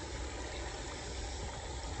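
Steady, even rush of a shallow creek running over gravel, with a low rumble underneath.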